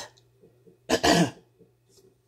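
A man clearing his throat with a single short cough about a second in.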